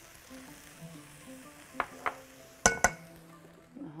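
Clinking of a metal spoon and glass bowl as diced eggplant is tipped into a frying pan: four short clinks, two light ones a little under two seconds in and two louder ones close together about three seconds in. Soft background music runs underneath.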